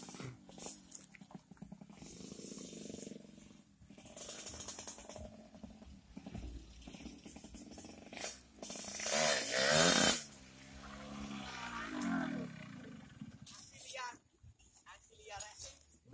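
A motorcycle engine revving as the bike rides off. The revs rise to their loudest about nine to ten seconds in, then slide down and climb again.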